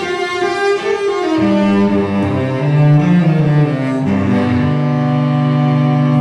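Solo cello played with the bow: long sustained notes, one after another, each moving to a new pitch.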